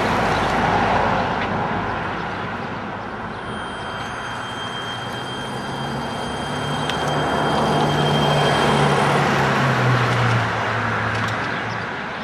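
Home-converted electric car moving slowly over wet, muddy ground: a thin, steady high whine from its electric drive and a low hum that rises in pitch as it pulls, over a constant wash of noise from the wet surroundings.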